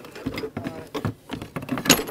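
Scuffing, clothing rustle and irregular light knocks as a person settles his weight onto a long wooden board lying on a carpeted floor, the board shifting under him, with a sharper click near the end.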